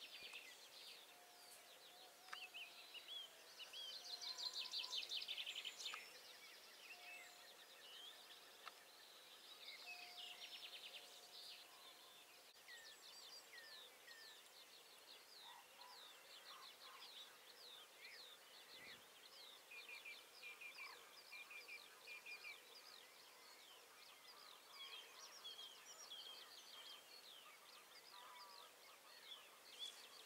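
Dawn chorus of several songbirds singing, with overlapping chirps, whistles and trills throughout. The loudest is a rapid trill about four seconds in.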